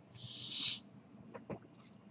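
A short hiss lasting just under a second, swelling and then cutting off suddenly, followed by a couple of faint clicks.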